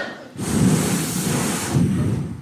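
Audience reaction to a punchline: a crowd laughing and cheering together in a dense wash of noise, swelling about half a second in and easing off near the end.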